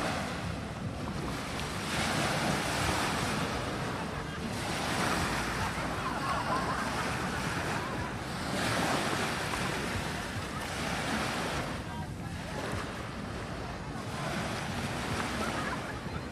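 Small waves breaking and washing up the shore, swelling and fading every few seconds, with wind buffeting the microphone.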